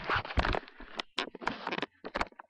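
Close rustling noise followed by a quick string of sharp clicks and knocks.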